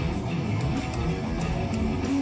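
Electric guitar playing a short improvised groove phrase over a live band jam, at a steady level.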